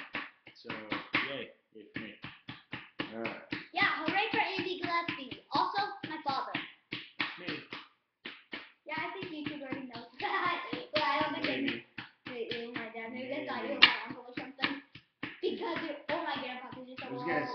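Rapid tapping and scraping of a small digging tool chipping at the plaster block of a dinosaur egg excavation kit, mixed with voices talking.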